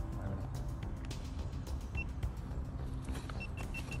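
Short high electronic beeps: one about halfway, then a quick run of about eight identical beeps near the end, over steady wind-like rumble and scattered handling clicks while an FPV quadcopter is readied on the ground.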